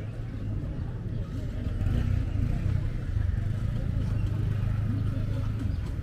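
A motor vehicle engine running with a low, steady rumble that gets louder about two seconds in, over a background murmur of voices.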